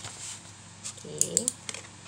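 A few light, sharp clicks and scratches of a pen and cardboard tube being handled on paper while a circle is traced around the tube's end.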